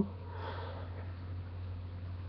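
A person sniffing once through the nose, a short breathy rush about half a second in, over a steady low hum.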